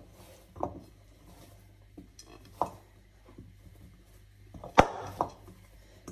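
Hands kneading poori dough in a glass bowl: scattered soft knocks and taps of hands and dough against the glass, with a sharper knock of the bowl just under five seconds in, over a faint low hum.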